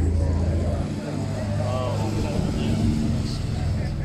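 Engines of two classic sports cars, a dark open racing car and a silver Jaguar E-type, running at low speed as they pass, a steady low rumble. Spectators talk close by over it.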